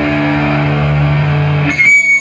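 An amplified electric guitar holds one steady, droning note through its amp. Near the end, it gives way to a brief high-pitched feedback whine.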